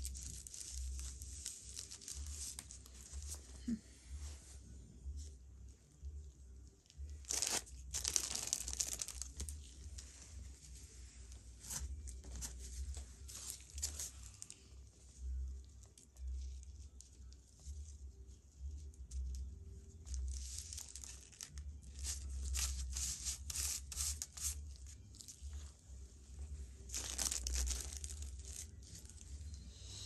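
Tissue paper being torn and crinkled by gloved hands as it is pressed down with Mod Podge, in intermittent rustling bursts. The loudest come about seven seconds in and again in the last third, over a low steady hum.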